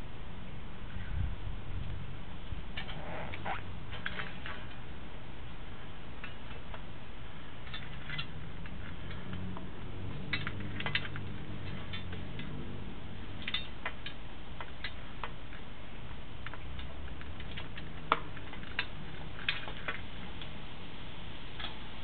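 Scattered light clicks and taps over a steady low hum: a sewer inspection camera's head and push cable being handled and worked into a drain pipe. A few sharper knocks come near the end.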